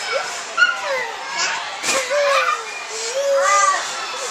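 Young children's high-pitched voices calling and babbling, with a single sharp knock about two seconds in and a louder drawn-out call near the end.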